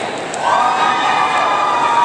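A long, high-pitched cheer held from about half a second in, over the hubbub of a large crowd in an arena.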